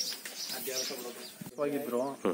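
Birds chirping faintly in the background, then a man's voice starts about three-quarters of the way through.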